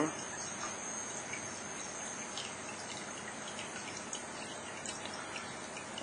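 Steady low background hiss with a faint, thin high-pitched whine: room tone between spoken lines.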